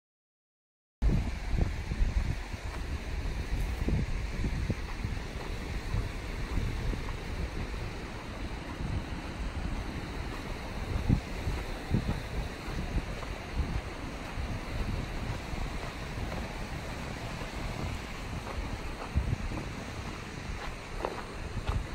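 Silence for about the first second, then wind buffeting the microphone: a low rumble rising and falling in uneven gusts, with a fainter hiss above it.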